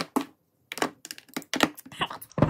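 Plastic makeup compacts and tubes clacking against each other and a clear acrylic organizer bin as they are set into it: a run of about nine sharp clicks and taps at uneven intervals.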